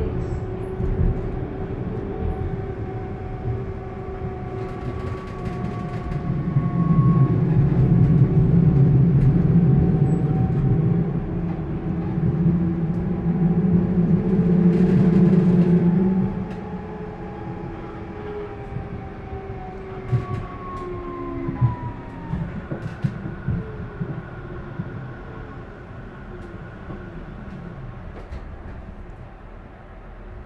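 Inside a Frankfurt VGF Type U5-50 light-rail car under way: low rolling rumble with several steady electric-motor tones. It is loudest in the first half, quietens after about sixteen seconds, and a little later the motor tones fall in pitch as the train slows, with a few sharp clicks.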